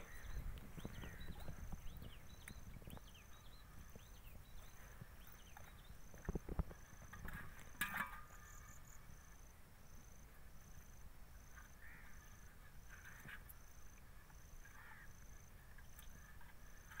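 Quiet outdoor ambience: an insect chirping in a steady rhythm, about one and a half pulses a second, with faint bird-like chirps in the first few seconds. Two brief thumps come about six and eight seconds in.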